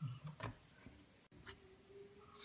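A hand working pieces of salted, sun-dried raw mango into ground masala powder in a shallow pan: three faint ticks as fingers and mango pieces touch the pan.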